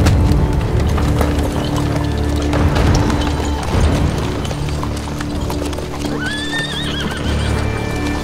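A horse-drawn wagon passes with horses' hooves clip-clopping, and a horse whinnies about six seconds in, rising and then wavering. Background music with low sustained tones plays underneath.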